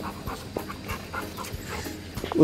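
A Labrador retriever panting.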